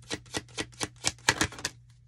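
A deck of tarot cards being shuffled by hand: a quick run of crisp card slaps, about six or seven a second, that stops shortly before the end.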